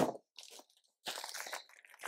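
Packaging crinkling and rustling as items are rummaged through and handled, with a sharp bump at the start and a longer rustle in the second half.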